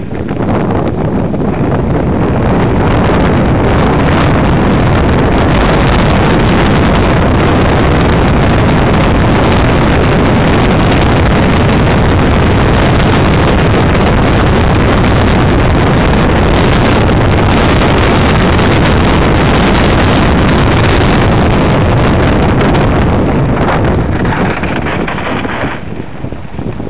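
Loud, steady wind rush buffeting the microphone of a camera carried on a moving mountain bike. It builds over the first couple of seconds and eases off near the end.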